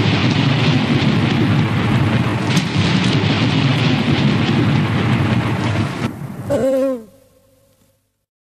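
A steady rushing noise with no beat or tune. Near the end a short pitched sound slides down in pitch, and everything fades out to silence.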